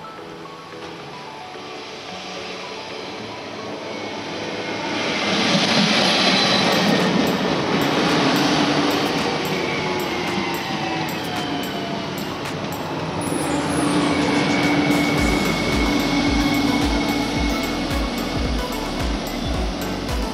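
A Regio 2N double-deck electric multiple unit approaching and running past a station platform. The rush of wheels on rail swells to its loudest about six seconds in, with a whine from the train's traction equipment, and stays loud as the long train goes by.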